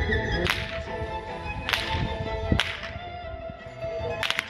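Three sharp cracks of a Hungarian herdsman's long whip, the karikás, spaced about a second apart.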